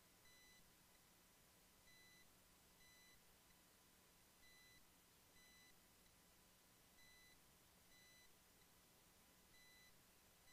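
Near silence, with a very faint electronic beep, a short high tone, repeating unevenly about once a second.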